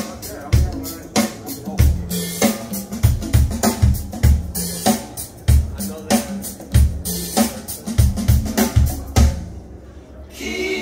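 Recorded music played over a pair of Kroma Atelier standmount loudspeakers: a track with a steady drum-kit beat of kick drum and snare over a heavy bass line. The music drops in level near the end.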